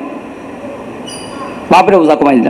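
A pause in a man's speech filled by steady background hiss, with a brief faint high-pitched tone about a second in. The man's voice resumes near the end.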